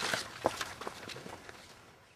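Footsteps on dirt ground, a few irregular steps, fading out to silence near the end.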